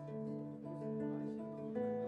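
Acoustic guitar played alone, chords ringing and changing about every half second: the opening of a slow piece.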